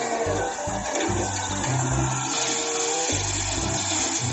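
Background music with a stepping bass line over a steady rushing noise from a Caterpillar wheel loader at work, tipping a bucket of gravel into a dump truck.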